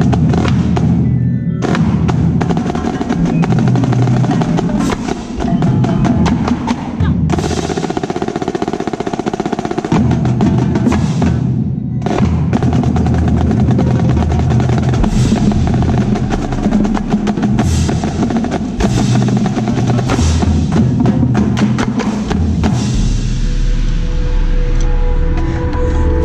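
Marching snare drum played with sticks right at the microphone, a dense, fast run of strokes, with the rest of the drumline's tenor and bass drums playing along.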